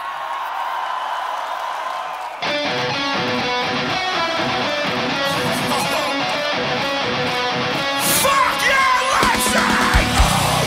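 Metalcore band playing live: after about two seconds of crowd noise, distorted electric guitars, bass and drums kick in together at once with a song's opening riff, and a voice yells over the music near the end.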